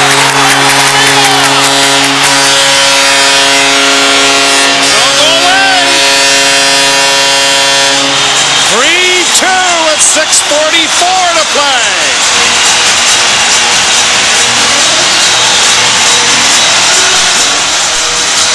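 Hockey arena goal horn sounding one steady low chord for about eight and a half seconds over a loudly cheering crowd, signalling a home-team goal. When the horn stops, the crowd cheering goes on with voices calling out over it.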